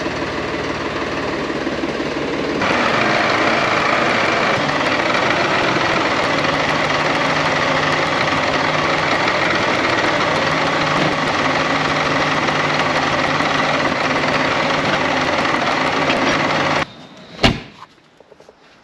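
Solis 50 compact tractor's diesel engine running as its front loader carries a bulk bag of feed. The revs rise a couple of seconds in and then hold steady. The sound stops abruptly near the end, followed by a single sharp knock.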